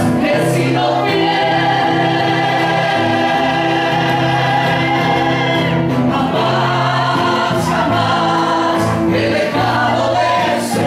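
Karaoke singing over an amplified backing track, several voices together, holding long notes for the first half before moving into shorter phrases.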